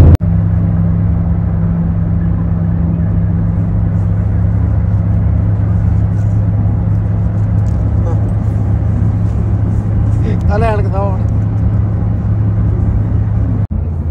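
Steady low drone of a car in motion heard from inside the cabin: engine and road noise holding an even pitch. A short burst of voice comes in about ten seconds in.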